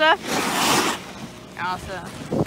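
A girl's brief high-pitched vocal sound, then a short rush of noise lasting under a second, then another brief voiced sound near the end.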